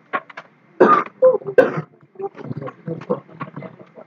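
Indistinct human voices in a room: low, mumbled talk with a couple of louder throat-like vocal noises, too unclear to make out as words.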